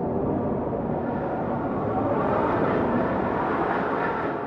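Sound-effect rumble for a logo animation: a steady, noisy drone with no clear tune, swelling a little past the middle.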